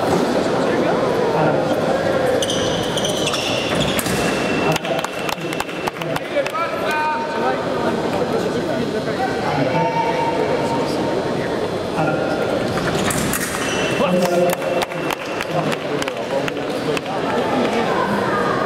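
Sabre fencing bout on a piste: fencers' feet stamp and sabre blades clash in quick clusters, against the steady voices of a large hall. Twice there are short high electronic tones, the scoring machine registering touches.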